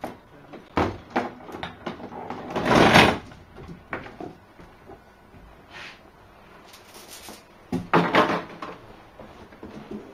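A padlock and metal chain rattling and clinking as they are unlocked and pulled off the handles of a louvered cabinet, followed by the cabinet doors opening and things being moved inside. The loudest clatter comes about three seconds in, with another around eight seconds.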